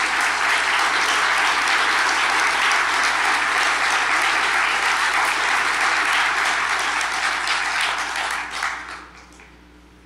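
Audience applauding steadily, dying away about nine seconds in.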